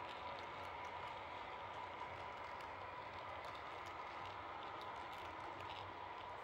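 H0-scale model passenger coaches rolling along the track: a faint steady hum with light, irregular clicks of the wheels running over the rail joints.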